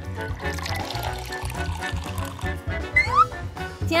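Lemonade pouring from a plastic drink dispenser's spout into a glass bottle, under background music with a steady beat.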